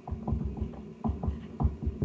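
A run of irregular low thumps with a dull rumble, about eight in two seconds, heard over a call microphone.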